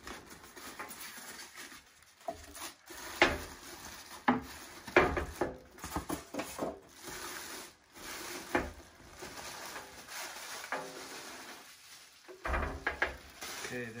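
Plastic wrapping rustling and crinkling, with foam packing blocks being handled, as a waffle iron is unpacked. The sound is irregular, with several sharper knocks along the way.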